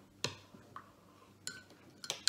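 Metal teaspoon clinking lightly against a ceramic mug while stirring a drink: three faint clinks, each with a short ring.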